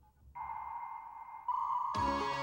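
Dial-up modem connecting: after a brief gap, a steady tone with hiss starts about a third of a second in and changes to a brighter, harsher handshake sound about halfway through.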